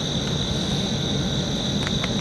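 Insect chorus singing at dusk in a steady, high-pitched drone, over a low steady rumble.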